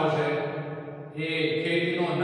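A man's voice reading aloud from a textbook, with a brief pause about a second in.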